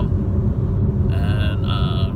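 Steady low rumble of road and engine noise inside a moving car's cabin. In the second half a man's voice makes two short drawn-out hesitation sounds.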